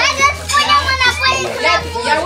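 Excited children squealing and shouting over one another, high voices overlapping, starting abruptly.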